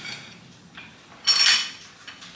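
Steel tube and hand tube bender clanking as the pipe is repositioned in the bender's die: a faint knock, then one loud, ringing metallic clank about a second and a quarter in.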